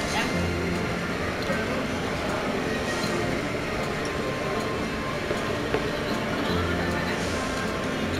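Background music with a few held bass notes over a steady murmur of voices, with a couple of faint clicks about five to six seconds in.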